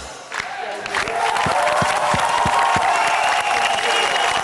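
Studio audience cheering and applauding, building up about a second in after a brief lull, with shouts and whoops held above the clapping.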